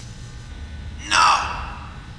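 A person's short, sharp gasp about a second in, over a low steady hum.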